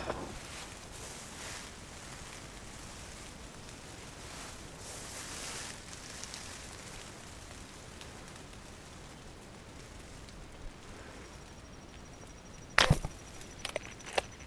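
Faint steady wind hush, then near the end a single sharp, loud crack of a fishing slingshot being shot as its bands release the arrow, followed by two smaller knocks.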